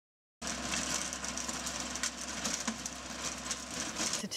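Riding lawn mower's engine running steadily as it mows clover and grass, a constant low hum under a broad whir. It cuts in abruptly about half a second in.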